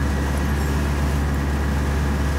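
Steady low engine drone and road noise of a small truck being driven, heard from inside its cab.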